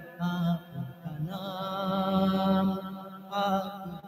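A man singing a Hindi film song into a microphone in long, held notes, with a few short breaks and pitch slides between phrases.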